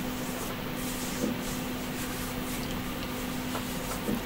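Steady background hiss with a low, constant hum underneath: room tone with no distinct event.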